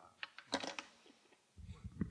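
Handling noise close to the microphone: a few sharp clicks and a short clatter, then low thuds near the end.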